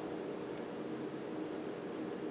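Quiet room tone with a faint steady hum, and a faint small click about half a second in as the plastic connector of a stepper motor cable is handled.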